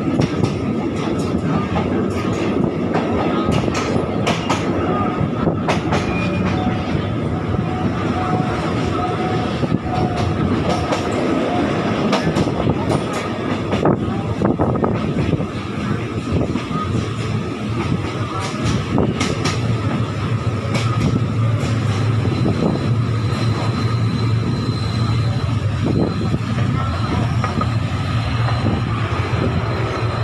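State Railway of Thailand diesel train running, heard from on board, with its wheels clicking over rail joints. A steady low engine drone comes in about halfway through, and a faint thin squeal sounds in the last several seconds as the train reaches the halt's platform.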